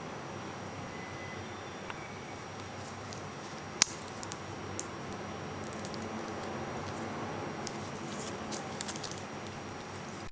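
Steel watch bracelet and folding clasp of a Tudor Prince Day-Date clicking and clinking as gloved hands handle it. There is one sharp click about four seconds in and several lighter clicks in the second half, over a steady low hiss.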